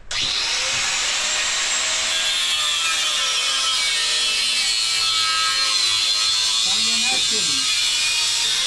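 Angle grinder cutting metal: a loud, steady grinding hiss that starts abruptly and holds on, its pitch wavering slightly as the disc bites.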